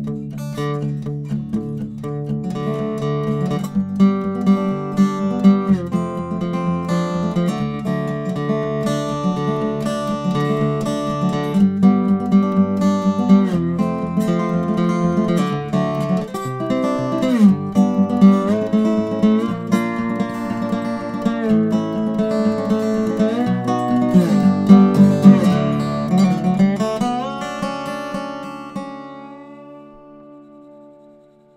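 1920s Weissenborn lap slide guitar played with fingerpicks and a metal slide bar: an old-time tune of picked notes with many sliding glides in pitch, ending on a chord that rings out and fades over the last few seconds.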